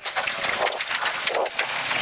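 Toyota AE86 rally car running at speed over loose gravel: a dense rattle of stones striking the underbody and wheel arches over tyre and engine noise.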